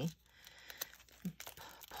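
Faint rustling and crinkling of paper as an order slip is pulled out of a small packet, with a few soft scrapes.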